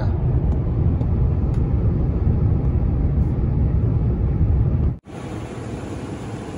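Steady road and engine rumble inside a car cruising on a highway. About five seconds in it cuts off abruptly, replaced by a quieter steady hum.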